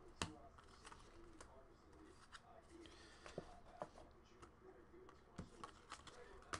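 Faint, scattered clicks and snaps of a stack of glossy trading cards being flipped through by hand, the sharpest just after the start; between them, near silence.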